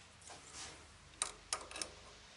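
Three sharp metallic clicks about a third of a second apart, after a soft rustle, as a steel caliper is handled and its jaws are closed on a freshly turned steel part to check the diameter.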